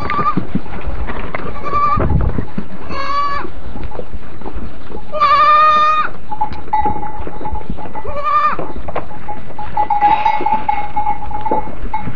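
A goat kid bleating about five times, calling for its mother; the call about five seconds in is the longest and loudest. A steady high tone runs under the second half.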